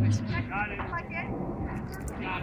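A public-address announcement's echo and hum die away just after the start, leaving faint chatter of nearby voices.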